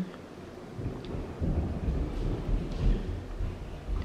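A low, irregular rumbling that starts about a second in and builds; its source is unidentified.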